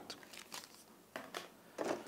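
Faint rustling and crinkling of paper and plastic packaging being handled, in a few short, separate crackles.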